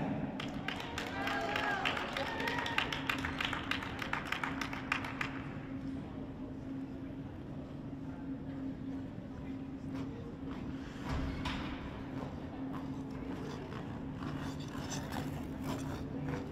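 Small audience applauding with a few voices calling out, thinning and dying away after about five seconds, leaving a steady low hum in the ice rink.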